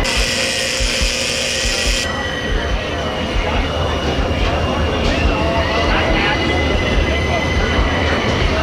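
Busy outdoor fairground ambience: a crowd's chatter over a steady mechanical hum and low thudding. A hiss in the mix drops away about two seconds in.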